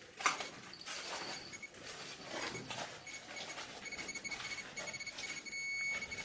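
A Geiger counter clicking rapidly and irregularly, along with a detector's high-pitched electronic beeping in quick pulses that sounds more often from about halfway through. The dense count rate is the sign of high radiation from contaminated clothing on the floor, around 30 counts per second.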